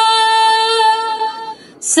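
A woman singing a naat unaccompanied into a microphone, holding one long steady note for about a second and a half. She breaks off briefly, and the hissing 's' of the next line starts near the end.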